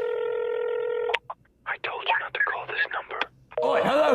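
Telephone ringing tone heard on the line of a flip phone: one steady tone held for about a second, ending in a click as the call is answered. A voice follows.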